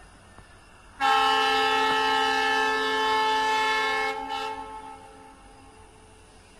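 Diesel freight locomotive horn, an Indian Railways WDG4-family unit, sounding one long blast of about three seconds that starts about a second in, then dies away with a short echoing tail.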